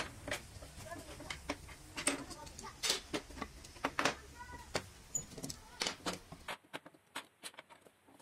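Metal bar clamps being loosened and lifted off a glued-up pine panel: a run of sharp clicks and clacks of the clamps' metal and plastic parts against the wood and the saw table, with a short squeak about halfway.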